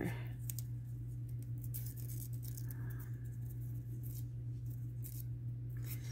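Light rustling and scattered soft clicks of paper and double-sided tape being handled and pressed by hand, over a steady low hum.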